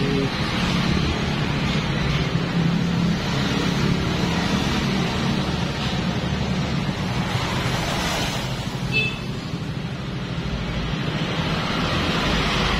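Honda Vario scooter's single-cylinder engine idling steadily, with a constant rush of noise over the microphone. A short high chirp sounds once about nine seconds in.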